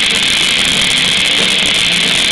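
A heavy metal band playing live, with distorted electric guitars and a drum kit in a steady, loud wash that sounds harsh on the recording.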